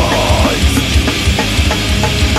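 Hardcore band playing a loud, aggressive song: heavily distorted electric guitar over drums with a fast, driving kick drum.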